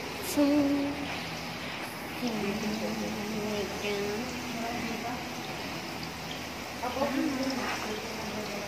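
Indistinct voices talking, with no clear words, over a steady background hiss.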